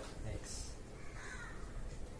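Whiteboard marker writing: faint scratchy strokes as a short formula is written, with a brief faint pitched squeak a little over a second in.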